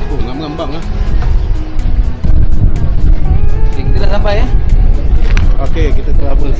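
Snatches of people talking over background music, with a loud low rumble setting in about two seconds in.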